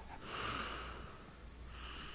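A person breathing softly close to the microphone: one breath about a quarter second in that lasts most of a second, and another starting near the end.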